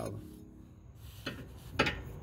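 A metal open-end wrench clinking against a nut under the car as it is fitted to loosen the nut, with two short knocks in the second half. Faint music plays in the background.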